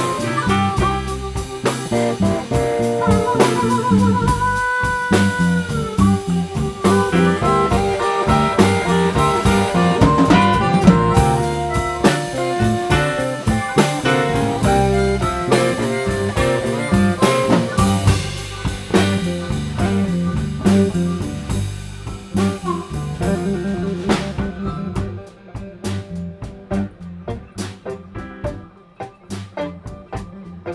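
Live blues band playing an instrumental stretch: amplified blues harmonica leading with held, bending notes over electric guitars, bass and drum kit. The band drops down in volume near the end.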